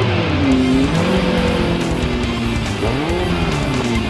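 Race car engines revving, their pitch swinging up and down near the start and again around three seconds in, under background music with guitar.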